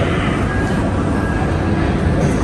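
Wind buffeting the camera microphone: a steady low rumble with no clear pitch.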